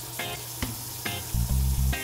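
Water running from a bathroom sink faucet and splashing over a brass piston valve held in the stream as it is rinsed.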